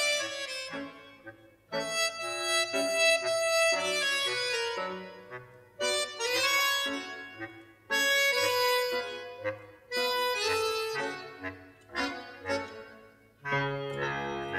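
Film score music led by an accordion, played in short phrases that start sharply and die away between them.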